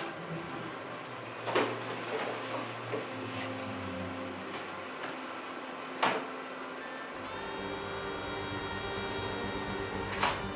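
Wood knocking on wood twice, about a second and a half in and again about six seconds in, as a pine slat is set into a wooden jig by hand. Soft background music plays throughout, with held notes from about seven seconds in.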